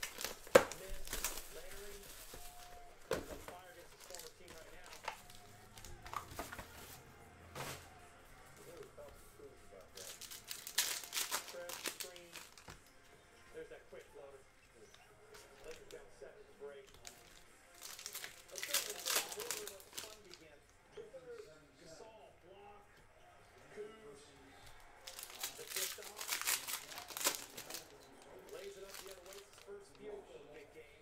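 Thin plastic wrapping crinkling and tearing in four separate bursts, from a trading-card box being unsealed and its cards and plastic holders handled. Faint talk or music runs underneath.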